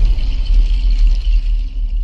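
Deep, steady bass rumble with a thin hiss on top, the sound design of an animated channel intro sting.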